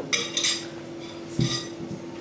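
A metal spoon clinking twice against a plate as white cheese is scooped off it, followed about one and a half seconds in by a duller knock as the plate is set down.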